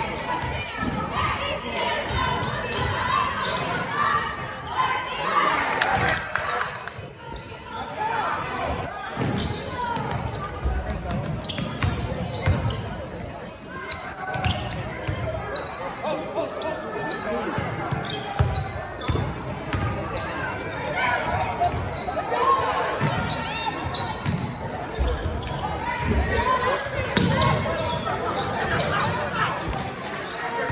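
A basketball dribbled repeatedly on a hardwood gym floor, with players and spectators calling out in the gym throughout.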